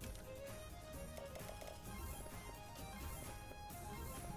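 Quiet background music from an online slot game: a light plucked-string tune of short melodic notes.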